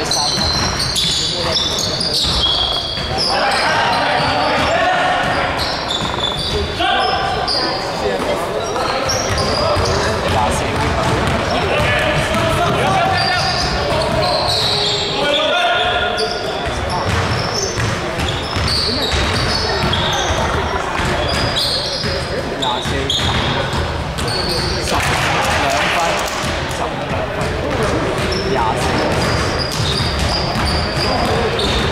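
Indoor basketball game on a hardwood gym court: the ball bouncing, sneakers squeaking in short high chirps, and players calling out, all echoing in the large hall.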